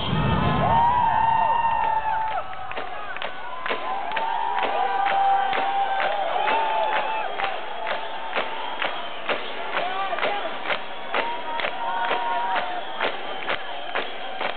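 Live concert music played loud to a crowd. The bass drops out about a second in, leaving a sharp, steady beat of about two strokes a second, with the crowd cheering and whooping over it.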